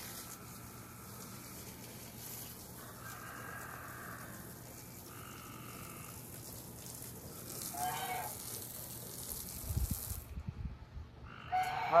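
Water spraying from a garden-hose wand onto a wooden deck to rinse off goose droppings: a steady hiss that stops about ten seconds in, followed by a few low bumps. A short bird call sounds about eight seconds in.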